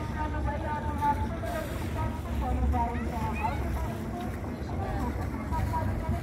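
Voices talking, unclear and mixed, over the low steady rumble of a passenger catamaran's engine as it motors slowly with its sails furled.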